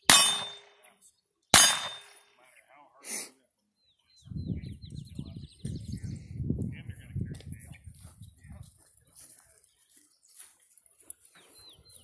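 Two gunshots about a second and a half apart, each followed by a ringing tail, then a fainter clang a second or so later.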